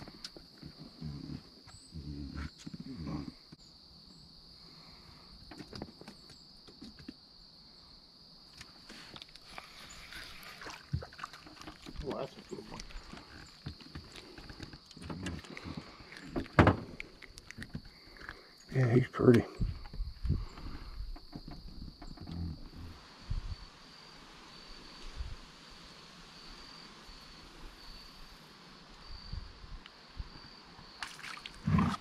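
A steady high-pitched insect drone from the swamp, which turns to an even pulsing chirp in the last quarter. Under it come scattered knocks and handling sounds in an aluminum jon boat, and a brief loud, low, muffled burst about two-thirds of the way through.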